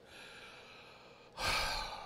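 A man's single audible breath into a close microphone, a short breathy sigh about one and a half seconds in, during a pause in his talk.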